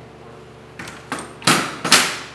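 A man's stifled coughs: a few short, sharp bursts in the second half, the last two the loudest, as he tries to hold back a cough from chips caught in his throat.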